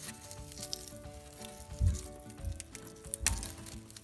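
Crinkling and crackling of old electrical tape and foil wrapping being peeled by hand off a burned ABS sensor wire, with a couple of dull handling thumps, over soft background music with held notes.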